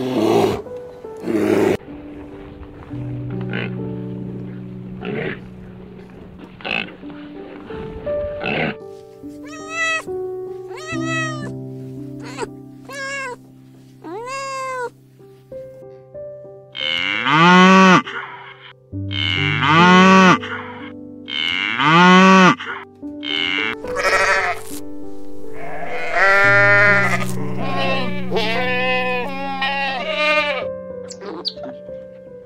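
Soft piano music with animal calls laid over it: a few short high calls, then several loud bleats, the last one long and quavering.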